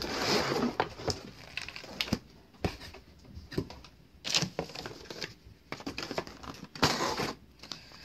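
A cardboard box and its clear plastic insert being opened and handled: irregular rustling, scraping and small clicks of packaging, busiest in the first second.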